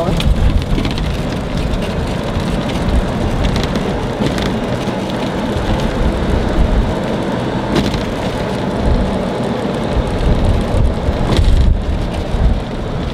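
Steady noise of an open-sided cart rolling over asphalt, with a few sharp knocks along the way.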